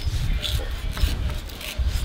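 Knife slicing through gummy shark skin as a fin is cut away, a few short rasping strokes over a low rumble.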